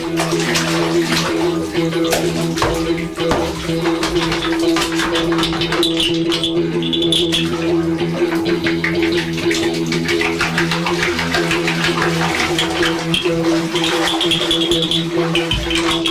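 Experimental improvised sound collage: a steady low drone held under dense splashing, crackling noise, with water sounds from a bath played as an instrument. Short high whistling tones come in about six seconds in and again near the end.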